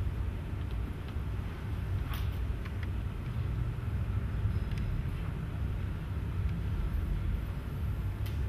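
Steady low rumble of room noise in a lecture hall, with a few faint clicks, the first about two seconds in.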